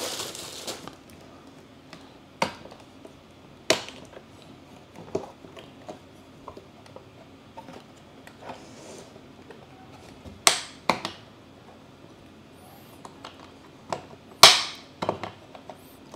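Hard plastic tool case being handled: a brief crinkle of bubble wrap at the start, then a handful of sharp plastic clicks and knocks a few seconds apart, the loudest near the end as its snap latches are worked.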